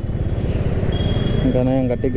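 Motorcycle engine running at low speed in stop-and-go traffic, heard from on board the bike, with wind hiss on the microphone. A thin, steady high tone joins about halfway through.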